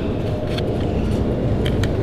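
Steady low rumble of gym background noise, with a few faint light clicks near the end.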